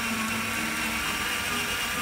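Black & Decker 18-volt cordless drill running steadily at full speed with a steady whine, spinning a potato on a wood bit against a hand peeler.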